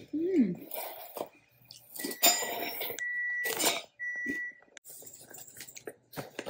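Three short electronic beeps at one pitch, about two, three and four seconds in, among brief clicks and handling clatter.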